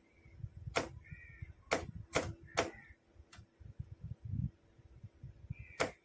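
Sharp clicks of a hand-worked switch keying a Morse signal lamp on and off, about six clicks at uneven spacing with a pause of about two seconds before the last.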